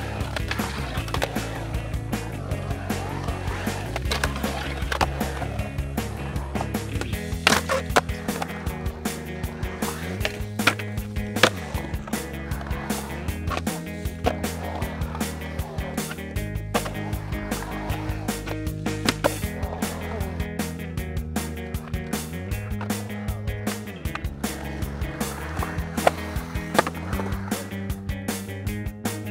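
Skateboards riding a concrete bowl: wheels rolling and carving, with frequent sharp clacks of boards and trucks hitting the coping and concrete. Background music with a bass line runs underneath.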